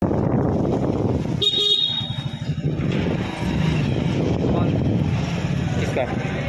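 A vehicle horn gives one short toot about a second and a half in, over steady vehicle engine rumble and traffic noise.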